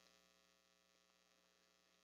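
Near silence in a pause of speech, with only a very faint steady electrical hum.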